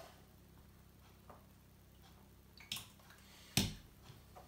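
Quiet handling of a plastic trial jar and a shot glass: a few faint light clicks and a brief scrape, then a sharp knock near the end as the plastic trial jar is set down on the worktop.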